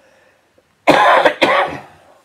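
A man coughs twice into a tissue held over his mouth and nose: two loud, sudden bursts close together, about a second in.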